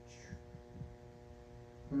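Quiet pause filled by a faint steady hum of several evenly spaced tones, with a few soft low taps; a man's short "hmm" at the very end.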